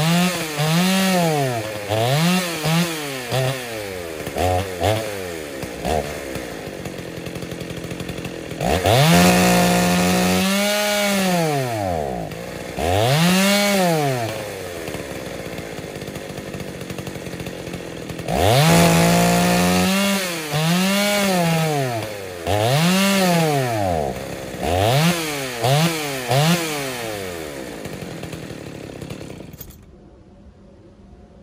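Ported Dolmar 116si two-stroke chainsaw with a 25-inch bar running in a large log, its revs repeatedly climbing and falling back in short bursts, with two longer spells held at high revs. The owner suspects a fouling spark plug or a fuelling problem behind its uneven running.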